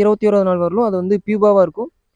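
A person's voice speaking continuously, with brief pauses between phrases.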